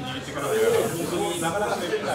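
Several people talking at once, with a hiss over the voices during the first half of the clip.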